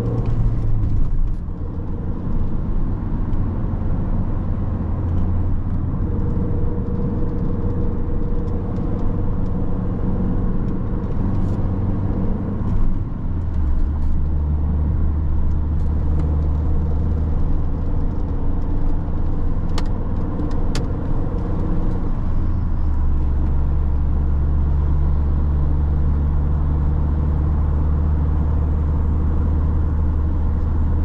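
Cabin sound of a Mini One R50's 1.6-litre four-cylinder petrol engine driving the car through its five-speed manual gearbox, with road noise. The engine note dips briefly about a second in at a gear change. It steps down to a lower steady drone twice, near the middle and again about three-quarters of the way through.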